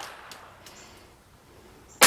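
The tail of a .380 ACP pistol shot fading away, then quiet open-air ambience with a few faint ticks.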